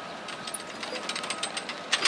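Steady, rapid mechanical rattling of construction work, with a louder, sharper clatter breaking in right at the end.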